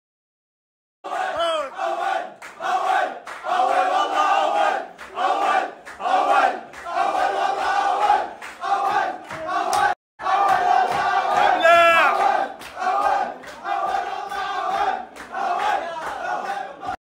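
A group of footballers chanting and shouting together in a rhythmic celebration chant, starting about a second in. It breaks off for a moment about ten seconds in, and one voice rises above the rest shortly after.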